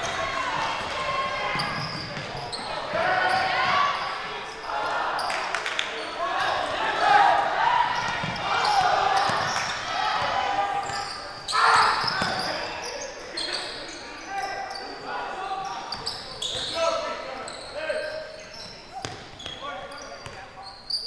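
Basketball game sounds on a hardwood gym court: the ball being dribbled, sneakers squeaking, and indistinct shouting voices from players and spectators.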